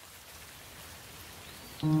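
Steady rain falling, an even hiss with faint drop flecks; near the end soft instrumental music comes back in over it.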